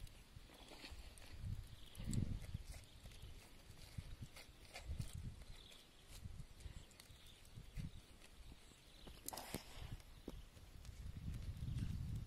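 Faint soft dabs and dull taps of a lemongrass stalk brushing sauce onto eels clamped in a bamboo grill, with a few light clicks between them.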